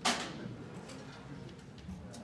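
A single sharp click right at the start that dies away quickly, then quiet room noise with a few faint ticks.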